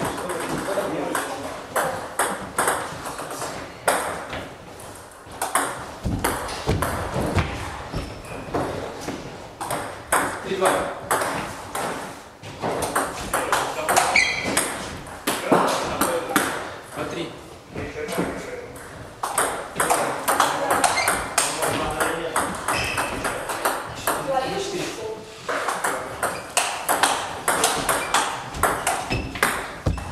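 Table tennis ball clicking back and forth off rackets and the table in rallies, with short pauses between points.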